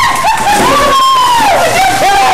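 A high-pitched voice holding long wordless notes that scoop up at the start. The longest lasts about a second and slides down near the end.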